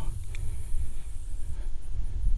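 Wind buffeting the microphone: an uneven low rumble that comes and goes.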